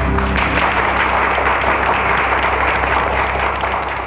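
Audience applause breaking out about half a second in, as the song ends, over a steady low sustained tone from the band; it starts to fade near the end.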